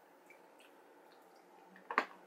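Very quiet room with a few faint wet mouth clicks from children chewing candy, then one short sharp click near the end.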